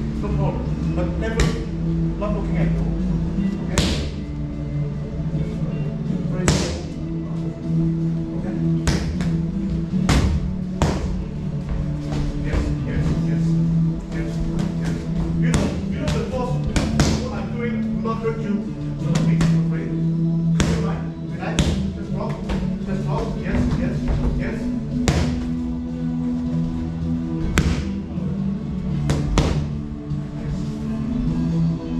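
Sharp smacks of gloved punches landing on focus mitts, coming at an uneven pace every second or so, over steady background music.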